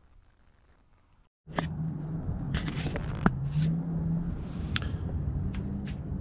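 Near silence for about a second and a half, then a steady low hum with scattered clicks and scrapes and a short laugh.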